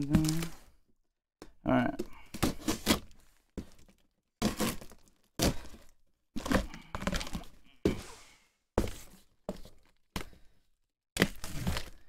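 A pocket knife slitting the packing tape and cardboard flaps of a shipping box: a run of short scraping, ripping cuts, about one a second, with cardboard knocks and crinkling in between.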